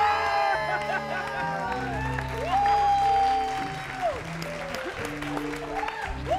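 Studio applause and excited cheering over background music with steady held bass notes; one long high cry is held for about a second and a half in the middle.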